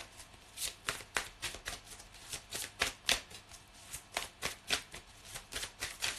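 A deck of tarot cards shuffled by hand: a steady run of short, sharp card strikes, about three or four a second.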